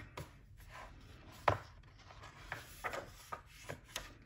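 Pages of a hardcover picture book being turned and pressed flat by hand: paper rustling and rubbing, broken by a few short sharp taps, the loudest about a second and a half in.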